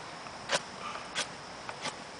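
A knife blade shaving a stick being whittled: three short, sharp scrapes about two-thirds of a second apart, the first the loudest.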